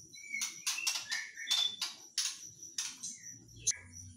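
Young wild-caught white-rumped shama in a cage calling a quick run of short, sharp chirps, about three a second, with a few brief whistled notes among them. A sharp click comes near the end.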